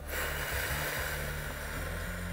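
A person's slow, deep breath close to the microphone, a steady rush of air, over soft sustained background music.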